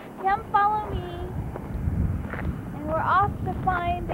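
High-pitched voices of children talking or sing-songing, with wind rumbling on the microphone about two seconds in.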